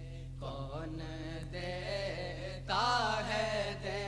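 A male voice singing a naat unaccompanied, in long held notes that glide and ornament in pitch; a louder phrase comes in a little before three seconds. A steady low hum runs underneath, typical of an old cassette transfer.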